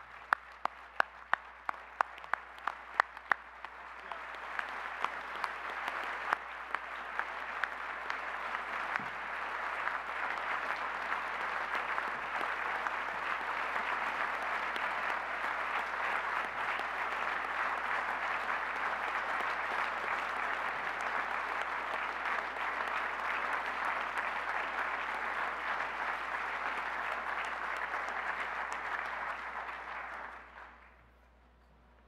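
Applause: for the first few seconds one person's sharp, close claps at about three a second, joined by the audience's clapping that builds up into long, steady applause and then stops abruptly near the end.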